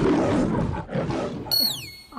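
Comic sound effects: a harsh rushing noise in two parts, then a whistle-like tone sliding down in pitch near the end.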